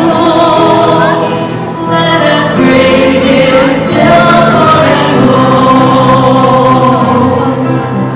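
A choir and a female soloist singing a Christian song, the voices holding long sustained notes.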